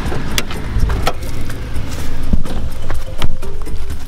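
Jeep driving on a gravel road, heard from inside the cab: a heavy low engine and tyre rumble with scattered sharp clicks of gravel, easing a little after about two seconds. Background music with held notes comes in over the second half.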